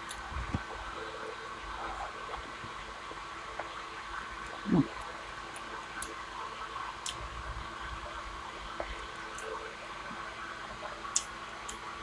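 Quiet eating with the fingers: faint soft ticks from chewing and fingers working the food over the steady hum of a small desk fan, with one short satisfied "hmm" about halfway through.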